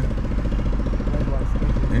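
A vehicle engine idling steadily close by, with an even, rapid pulse. A faint voice can be heard briefly about one and a half seconds in.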